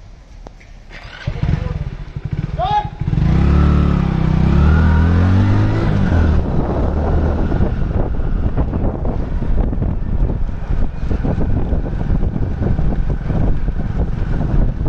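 A motorcycle-like engine picks up and runs for a few seconds, its pitch rising and falling. After that, wind buffets the microphone as it moves along with the runners.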